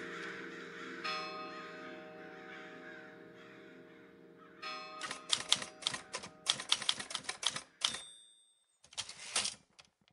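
Typewriter sound effect: a fast run of key strikes, then a bell ding and a second short burst of keys near the end, while background music fades out during the first half.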